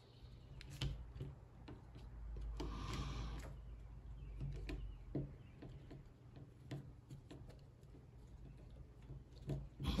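Faint small clicks and scrapes of a hex key turning a small screw out of the selector switch of a Valken M17 paintball marker, with a short louder rustle about three seconds in.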